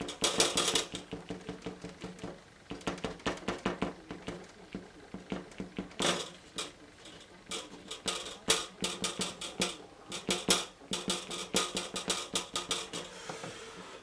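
A tool scratching quickly across wet watercolour paper, etching rock shapes into thick paint: short, sharp scrapes in runs of several a second, with a faint steady hum behind.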